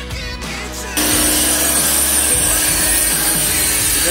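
Background music, then about a second in a Ryobi pressure washer starts: a steady motor hum under the loud hiss of its water jet spraying the car's door jamb and sill.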